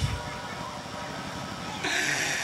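A single low drum stroke closes the Bassac opera ensemble's music, followed by a low steady background rumble through the stage sound system. A man's voice starts over the microphone near the end.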